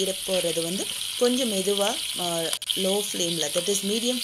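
Marinated chicken pieces sizzling steadily in oil in a non-stick tawa, with a light crackle. A voice runs over it in short phrases and is louder than the sizzle.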